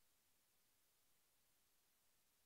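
Near silence: only faint, steady hiss.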